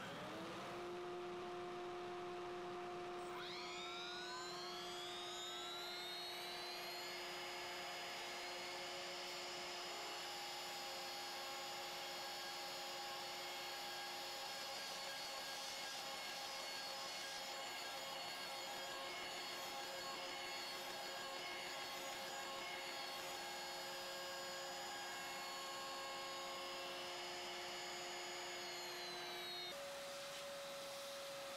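CNC router's electric spindle spinning up to speed and running with a steady high whine; the pitch climbs in a second step a few seconds in, then holds, and begins to drop just before the end.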